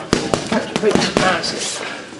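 Boxing gloves hitting focus mitts: a quick run of about five sharp slaps of punches landing on the pads, with voices in the gym behind.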